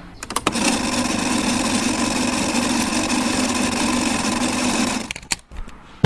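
Reel-to-reel tape machine switched on with a few clicks, its motor and transport running with a steady whir for about four and a half seconds, then clicked off.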